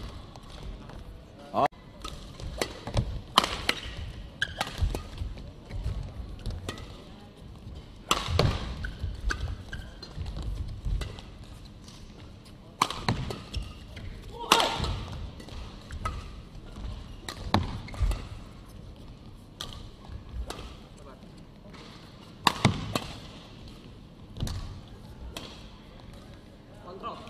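Badminton doubles rally: irregular sharp racket hits on the shuttlecock, mixed with thuds of players' feet on the court.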